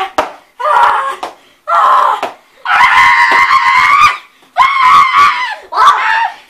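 Children screaming in repeated loud, high-pitched bursts during play-wrestling, with one longer scream lasting about a second and a half, about three seconds in.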